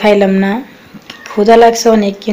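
A woman's voice in two short spoken phrases, with a quiet pause of under a second between them.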